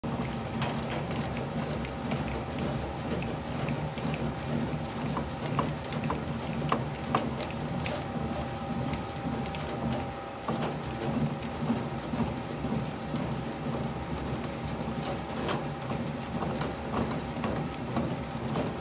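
Aluminium alloy BBCOR baseball bat being turned by hand through a bat roller's pressure rollers during a heat-roll break-in. It makes a continuous pattering crackle of small irregular clicks, over a steady low hum.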